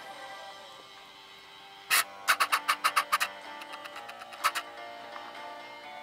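Music from an FM broadcast playing through the loudspeaker of a homemade TDA7088T radio, with a quick run of sharp percussive hits about two to three seconds in.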